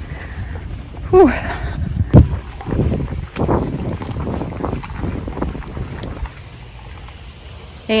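Wind buffeting a handheld phone's microphone, with rumble and knocks from the phone jostling while its holder runs. A breathy 'whew' about a second in; the rumble quietens near the end.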